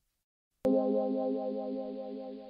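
A short musical interlude sting: after a brief silence, a held synthesizer-like chord with a chorus-like waver starts sharply about half a second in and slowly fades.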